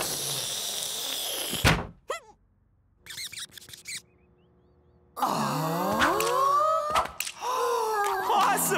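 Cartoon sound effects: a thrown object whooshes through the air for over a second and lands with a loud thunk, then a brief pen scribble. From about five seconds in, a group of children cheer together.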